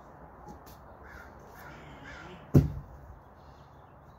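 A car tyre, heaved over, lands on the grass with one heavy thud about two and a half seconds in. Before it, a few faint calls that sound like crows cawing.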